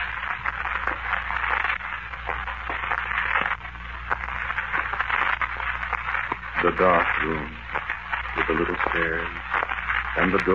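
Old radio transcription recording with a steady hiss, frequent crackle and a low hum. Two short wavering pitched sounds come in near the end.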